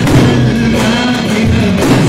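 Loud live halay dance music: a davul bass drum beaten with a stick under a sustained melody with singing.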